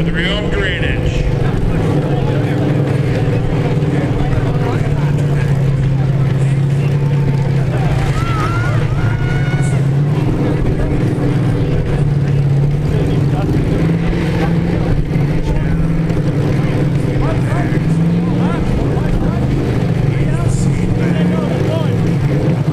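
Several demolition derby trucks' engines running on and off the throttle, a loud, mostly steady drone whose pitch shifts slightly, with voices mixed in.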